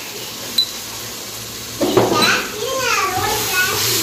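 A child's voice calling out with rising and falling pitch, starting about two seconds in and the loudest sound here. Before it, a single sharp clink from the aluminium pot as a spatula stirs the masala.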